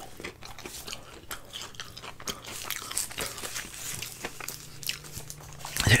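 Close-miked chewing of crispy curly fries, an irregular run of small crunches.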